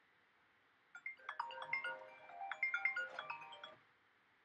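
A short electronic melody of quick, clear notes at many pitches, starting about a second in and stopping shortly before the end.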